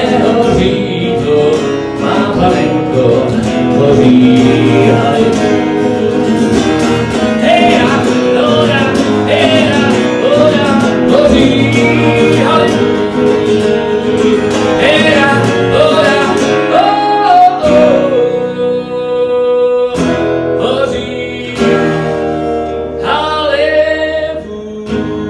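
A man singing live to his own strummed acoustic guitar. About three quarters of the way through, the voice drops out and the guitar plays on alone; the voice comes back just before the end.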